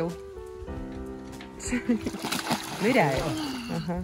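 Water splashing in a backyard above-ground pool as a child moves through it, about two seconds in, with a voice calling out over it. Background music with a held chord runs underneath.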